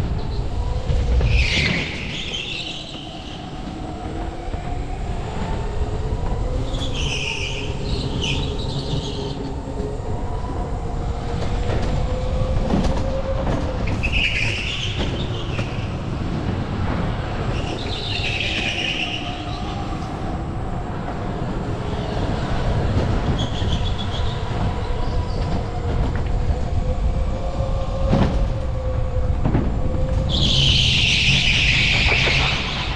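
Electric go-kart driven hard, heard from on board. Its motor whine rises and falls with speed under a rumble from the chassis, and the tyres squeal in short bursts through the corners every few seconds.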